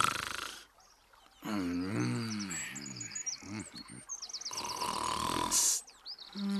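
A man snoring: a long, low, rattling inhale and then a breathy exhale. Faint birds chirp behind it.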